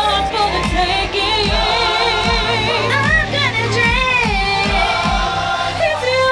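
A young woman singing a solo with a wide vibrato into a handheld microphone, over a musical accompaniment with a low, pulsing beat.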